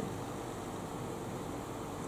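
Steady, even background hiss with a faint low hum: room tone.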